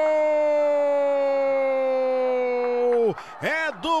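A football commentator's drawn-out goal shout, "Gooool!", held as one long loud note that sinks slowly in pitch. It breaks off about three seconds in, and rapid excited speech follows.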